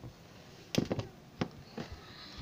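A handful of sharp knocks and taps on a stone countertop as toys are handled and set down, two close together about three quarters of a second in, then single ones spread over the next second.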